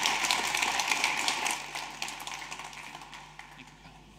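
Audience applauding, the clapping thinning out and fading away over the second half.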